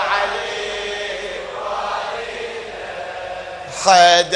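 A congregation chanting a devotional refrain together in response to a reciter, heard as a softer, diffuse mass of voices. The lead reciter's loud solo voice comes back in near the end.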